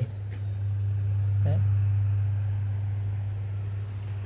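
Steady low electrical hum at an even pitch, with one short spoken word about a second and a half in.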